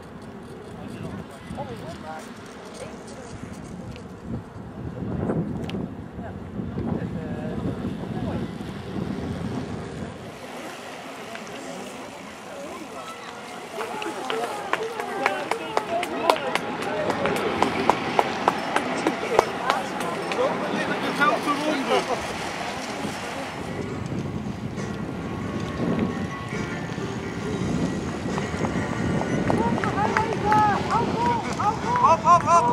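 Indistinct chatter of several voices with a low rumble of wind. Through the middle stretch the voices grow louder and denser, mixed with a rapid run of short clicks.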